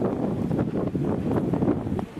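Wind blowing across the microphone: a loud, low, noisy rush.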